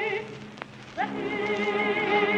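Historic opera recording of a mezzo-soprano singing with wide vibrato. Her held note breaks off at the start, leaving a short gap of record surface hiss with a click. About a second in she comes in again, sliding up into the next note.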